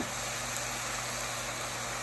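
Steady sizzle of tomatoes and sliced eggplant cooking in a stainless steel saucepan over a gas burner, with a low steady hum underneath.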